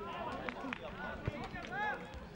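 Faint, scattered shouts and calls of players across a football pitch, with a few short knocks of the ball being played.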